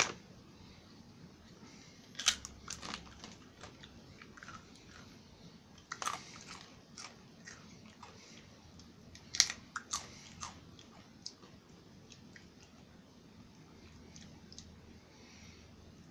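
Crunchy hummus chips being bitten and chewed: scattered crisp crunches in clusters about two, six and ten seconds in, then only faint chewing.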